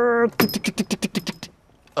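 A man making aircraft noises with his mouth while playing at flying a jet: a held, slightly rising engine-like drone that stops just after the start, then a rapid string of sharp popping sounds, about ten a second for about a second, like mouth-made gunfire.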